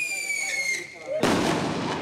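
A whistling firework rocket gives a high whistle that falls slowly in pitch. About a second in there is a sudden loud firework bang that runs on as a noisy rush.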